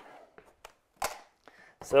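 Cardboard and paper being handled in a shipping carton as a boot box is grabbed: a few light taps and one short rustle about a second in. A man's voice starts near the end.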